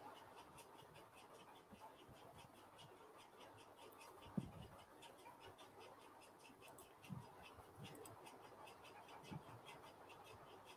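Near silence, broken by three faint short sounds about four, seven and nine seconds in.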